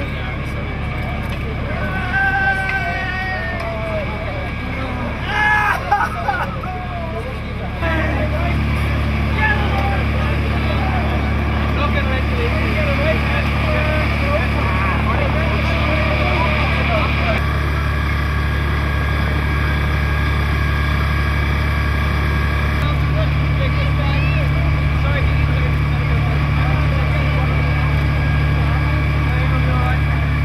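Diesel engine of a fire appliance running steadily at constant speed, a low hum, with shouted voices over it in the first few seconds. The hum gets louder about eight seconds in.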